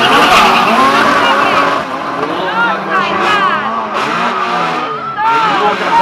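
A hatchback drag car's engine running hard down the strip, fading with distance over the first two seconds. Spectators talking and shouting carry over and after it.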